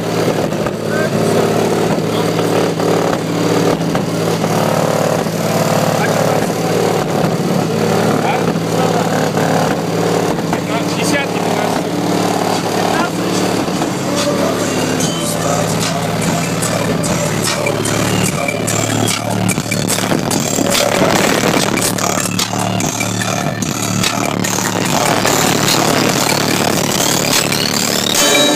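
Music with vocals played loud and steady through a high-power car audio system of fifteen Sundown Audio SA-10 subwoofers driven by two Sundown NS-1 amplifiers, the bass lying in sustained low notes.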